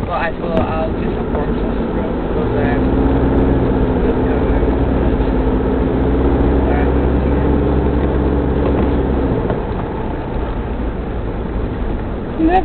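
Mitsubishi Pajero 4x4's engine and road noise heard from inside the cabin while driving. A steady engine hum grows louder about two seconds in, holds evenly, then drops away at about nine and a half seconds.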